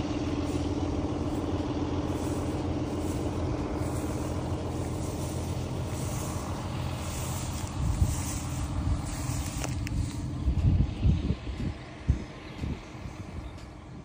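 Steady hum of an engine idling, with bouts of low rumbling and thumps in the second half.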